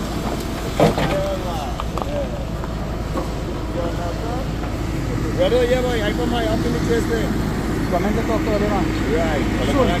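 Vehicle engines running steadily, a backhoe loader and a car moving slowly close by, under indistinct voices of people talking. There is a single sharp knock about a second in.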